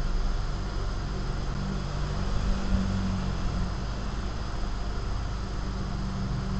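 Steady low hum with an even hiss, background machine or room noise with no distinct events.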